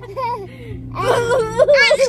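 A baby's high-pitched vocalizing: a short faint whimper, then a louder whiny squeal from about a second in that rises in pitch near the end.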